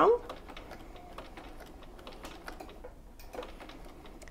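Bernina sewing machine stitching slowly in reverse, its needle mechanism giving a soft run of faint clicks as it back-stitches over the zipper teeth.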